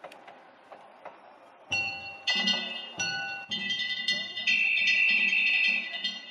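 Danjiri festival music: small metal gongs struck over and over, each stroke ringing, joined by a steady drum beat from about two seconds in. From about four and a half seconds in, a loud, sustained high note sounds over them.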